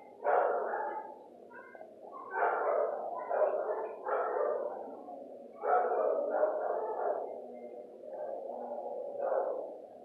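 Dogs barking in an animal-shelter kennel, in four bursts of quick barks a couple of seconds apart.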